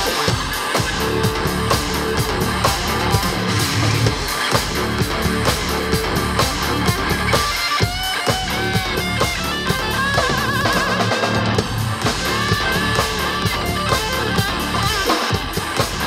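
Live EDM-rock band playing: electric guitar, drum kit and synthesizer keyboard together at a steady loud level, with a wavering high lead line near the middle.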